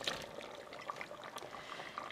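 Faint wet sliding and a few soft knocks as chunks of peeled cassava are tipped from a plastic tub into an aluminium pressure cooker of beef stew.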